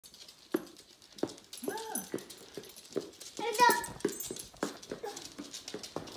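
Small dog whining twice, a short rising-and-falling whine about two seconds in and a higher, wavering one around three and a half seconds, among light taps on a hardwood floor.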